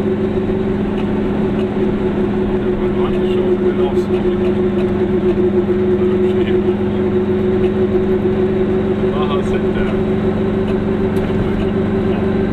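A car's engine and road noise heard from inside the cabin while driving at a steady speed: a constant low drone of unchanging pitch.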